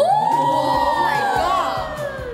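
Several young women shrieking together in one long, high-pitched scream, its pitch slowly sinking over nearly two seconds: excited cheering at a correct guess.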